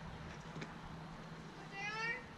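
A single high-pitched call from a person's voice near the end, drawn out for a fraction of a second, over a faint background with a low steady hum.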